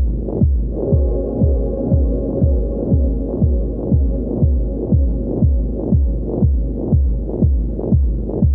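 Dub techno track: a deep kick drum on a steady beat about twice a second under a sustained, muffled chord, the whole mix dark with almost no treble.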